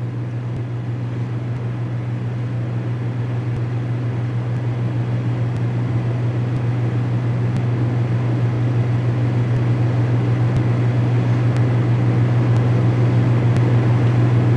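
A steady low hum with hiss underneath, slowly getting a little louder, with a few faint clicks.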